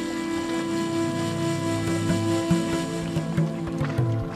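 Background music of sustained, held notes and chords, with a few short soft knocks in the second half.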